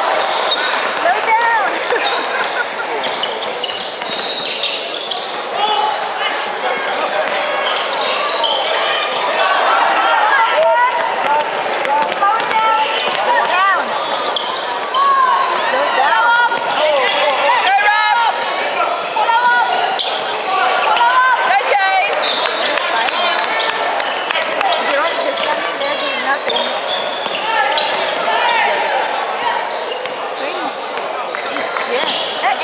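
Indoor basketball game in play: the ball bouncing on a hardwood court, sneakers squeaking in short chirps, and players and spectators calling out, all echoing around a large hall. The squeaks are thickest in the middle of the stretch.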